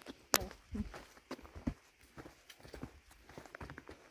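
Footsteps of hikers walking on a dirt forest trail strewn with dry leaves and twigs: uneven crunches and knocks, the sharpest one just after the start.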